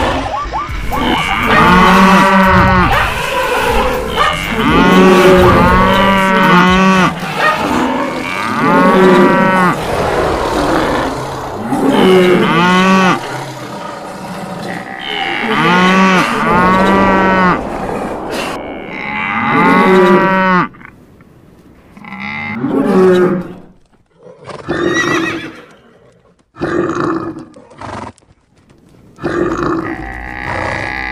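Cattle mooing: long, loud calls repeating about every three and a half seconds over continuous background noise. After about twenty seconds the background drops away and the calls become shorter, with quiet gaps between them.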